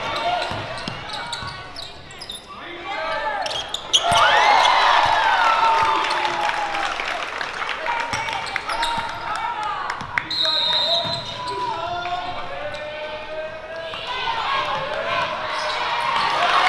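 Live basketball game sound in a gym: a ball bouncing on the hardwood court and sharp clicks of play, under the shouts and voices of players and spectators, loudest about a quarter of the way in. A brief high-pitched tone sounds about two-thirds through.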